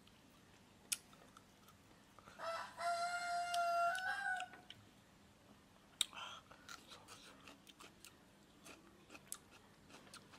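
A rooster crows once, a single call of about two seconds that starts a couple of seconds in and lifts slightly in pitch before it ends. Around it come soft, scattered clicks and crunches of chewing fried pork ribs.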